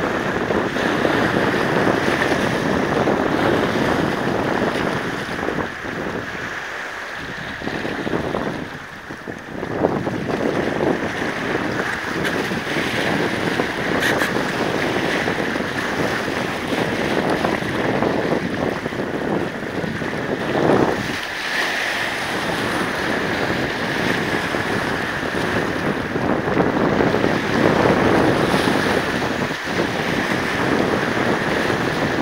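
Small waves washing and splashing against boulders at the water's edge in irregular surges, with wind buffeting the microphone.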